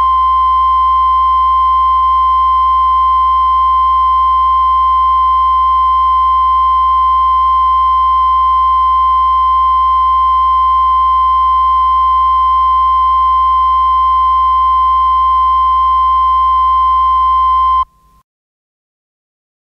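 A loud, steady, pure electronic tone held unchanged over a low hum, then cut off abruptly near the end.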